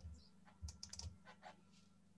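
Faint typing on a computer keyboard, heard over a video call: one or two keystrokes at the start, then a short run of clicks from about half a second to a second and a half in.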